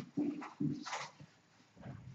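A man's short wordless vocal sounds: a couple of brief murmurs and a breathy hiss in the first second, then a pause.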